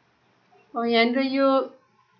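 Speech only: a single drawn-out spoken word in Nepali ("yo"), after a moment of near silence.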